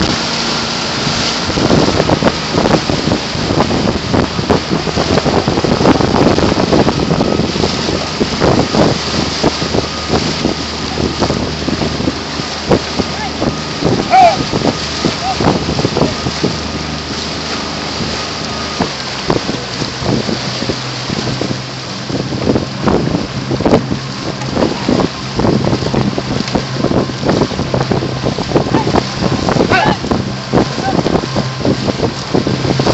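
Wind buffeting the microphone on open water, over a steady motor hum whose pitch shifts about two-thirds of the way through. Outrigger canoe paddles splash as they stroke through the water.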